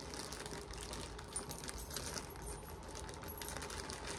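Plastic packaging crinkling and crackling as it is torn open by hand, a steady stream of small crackles.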